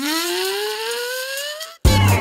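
Background music: a single pitched tone slides steadily upward for nearly two seconds and cuts off abruptly near the end. Upbeat music with a strong beat then comes in.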